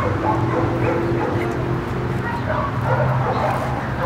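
Dogs making short barks and whines while playing, over a steady low hum.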